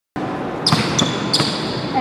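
Basketballs bouncing on a hardwood gym floor: three sharp bounces roughly a third of a second apart, each followed by a short high squeak, over the steady noise of the gym.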